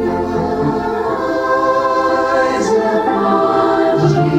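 A group of voices singing a gospel hymn in held chords, with organ accompaniment.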